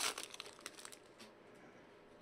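Foil trading-card pack wrapper crinkling as it is peeled open by hand, a run of crackles lasting about a second.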